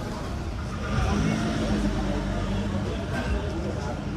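A motor vehicle's engine humming as it passes close by on the street, rising about a second in and easing off toward the end.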